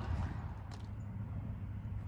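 Faint footsteps of hiking boots in wet, gravelly mud over a low, steady outdoor rumble.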